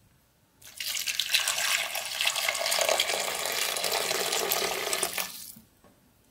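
Water poured in a steady stream into a stainless steel pot of ribs and prunes, starting just under a second in and stopping about half a second before the end.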